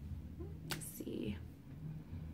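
A person whispering under the breath: a short breathy whisper about three-quarters of a second in, then a faint murmur.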